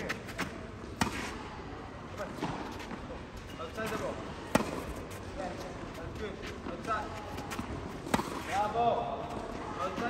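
Tennis balls being hit with rackets and bouncing on a clay court during a forehand feeding drill: irregular sharp pops, the loudest about four and a half seconds in and again near eight seconds. Faint voices are heard in the background.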